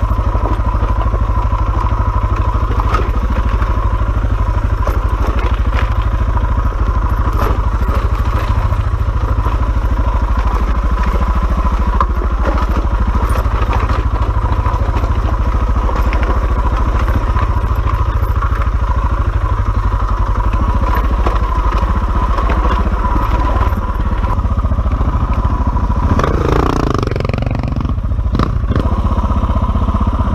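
Dirt bike engine running steadily under throttle while riding over a rocky trail, with frequent knocks and clatter from the bike bouncing over stones. Near the end an engine note swings up and down in pitch.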